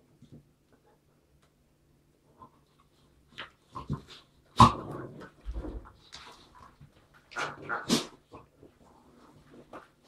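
Two dogs play-fighting, a German shepherd wrestling with a red-coated dog on its back: short dog vocalisations come in separate bursts after a quiet first few seconds, the loudest and sharpest about four and a half seconds in.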